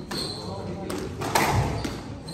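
Squash rally: the ball struck by rackets and smacking off the court walls, several sharp hits about half a second apart in the second half, with a short shoe squeak on the court floor near the start.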